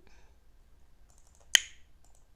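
A single sharp, loud click about one and a half seconds in, with a brief ringing tail.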